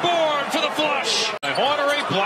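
A male television commentator talking, with a sudden brief dropout about a second and a half in where the highlight edit cuts to the next play.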